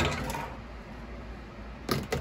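Parts of a resin wash-and-cure station being handled: a sharp click at the start and another clack near the end, with quiet handling noise between.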